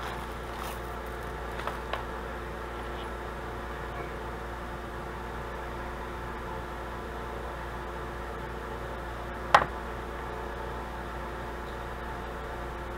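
Steady mechanical room hum, with a few faint small clicks of jewelry pliers and wire being handled. About nine and a half seconds in comes a single sharp metallic click, the loudest sound.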